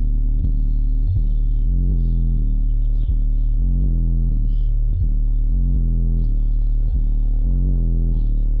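Bass-heavy music played loud through four DS18 EXL 15-inch subwoofers in a Q-Bomb box, heard from inside the car. Deep, steady bass notes shift in pitch under a regular beat.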